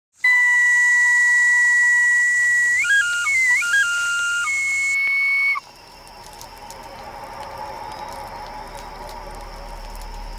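A high, breathy whistle-like tune: a long held note, a few quick stepped notes, then another held note, cut off suddenly about five and a half seconds in. It is followed by a quiet hiss with faint crackles that slowly grows louder.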